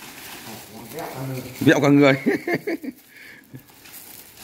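A man speaking briefly in Vietnamese in the middle, with only low background noise before and after.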